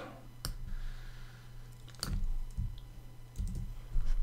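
Computer keyboard keys clicking a few times, spaced out, with some soft low thumps and a faint steady low hum underneath.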